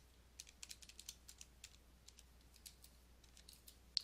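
Faint clicking of keys being pressed, about a dozen clicks, most of them in the first two seconds and a few more near the end, as 1,600π is keyed in to get its decimal value.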